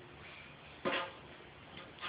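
A children's toy drum struck once about a second in, a single short knock, with a faint tap near the end.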